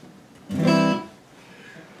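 Cutaway acoustic guitar sounded once with a single strum about half a second in, ringing briefly and fading within about a second.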